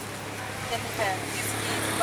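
A motor vehicle's engine running steadily close by, a low hum under brief, faint voices.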